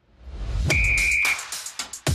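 TV football show's opening sting: a rising whoosh, a short steady whistle blast, then electronic music with hard beat hits.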